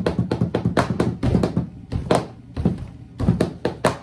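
A quick, uneven beat of taps and knocks over a low thud, with no voice over it.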